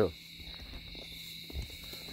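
Faint, steady chirring of crickets over a low hiss, with a soft knock about one and a half seconds in.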